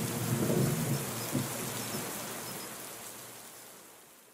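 Rain-and-thunder sound effect: a steady wash of rain with low thunder rumbling in the first second or so, the whole fading out gradually.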